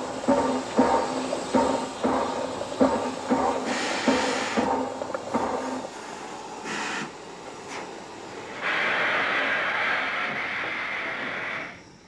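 Steam tram locomotive No. 7739: a steady rhythmic beat through the first half, short bursts of hissing steam around the middle, then a steady hiss of steam from about nine seconds in that cuts off just before the end.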